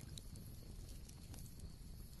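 Faint background ambience between stretches of narration: a low, steady rumble with a few soft, scattered ticks.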